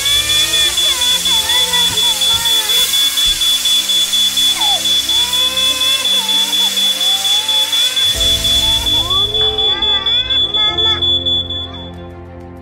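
Smoke alarm sounding: one steady, high-pitched tone pulsing about four times a second, starting abruptly and cutting off near the end, over a hiss and voices.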